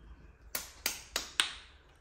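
Four quick finger snaps, evenly spaced about a third of a second apart, starting about half a second in.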